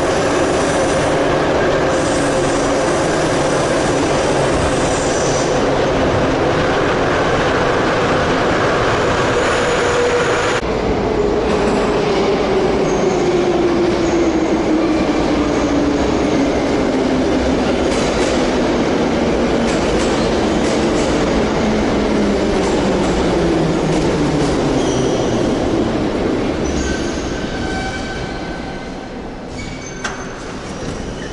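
Metro train running: first, from inside the car, steady wheel and running noise with a motor whine. Then, after a cut about ten seconds in, a train pulls into the station, its motor whine falling steadily in pitch as it slows to a stop near the end.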